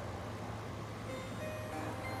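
Quiet music from the speaker of an animated Home Accents Holiday 3-Faced Jester Halloween prop, a few faint held notes over a low steady hum, playing between its spoken lines.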